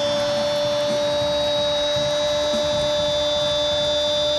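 A football commentator's drawn-out goal shout, one long vowel held at a single steady pitch, with crowd noise underneath.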